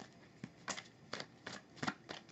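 A deck of tarot cards being shuffled by hand: five short, faint slaps of cards spread through the two seconds.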